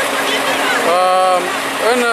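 A man's voice hesitating before speaking, with a drawn-out filler vowel about a second in, over a steady low hum.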